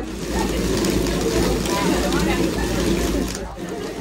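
Continuous wooden clattering and rattling from a traditional wooden hand-driven machine, its long pole being worked back and forth by hand. The clatter eases shortly before the end.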